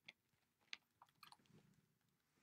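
Near silence broken by a few faint, scattered clicks and small taps.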